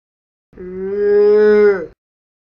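A single drawn-out "moo", about a second and a half long, swelling and dropping in pitch as it ends.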